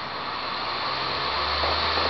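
Laptop optical drive spinning up a CD to boot from it: a steady whirring noise that builds gradually louder, with a low hum coming in after about a second.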